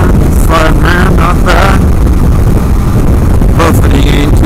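Loud, steady wind buffeting on the microphone of a 2016 Kawasaki KLR650 ridden at freeway speed, mixed with the motorcycle's running engine. A few short wavering, voice-like tones rise over it about a second in and again near the end.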